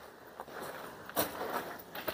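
A few soft footsteps over a quiet outdoor background.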